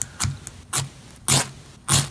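Ferro rod struck with its small steel striker: five short scrapes about half a second apart, the stronger ones in the second half, each throwing sparks, showing the fire steel works.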